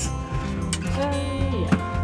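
Background music with an acoustic guitar strumming.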